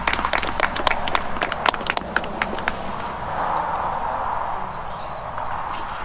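A small group of people applauding: scattered individual hand claps that thin out and die away about three seconds in.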